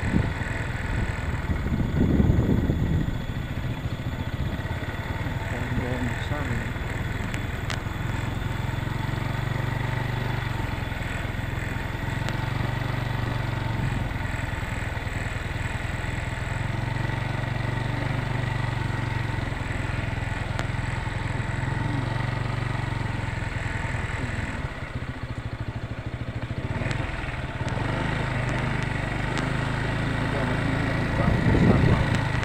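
Motorcycle engine running at a steady cruising pace, heard from the rider's seat. There is a louder rumble about two seconds in, and the engine eases off for a couple of seconds near the end before picking up again.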